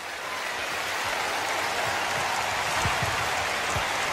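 Large audience applauding in an arena, building over the first second and then holding steady.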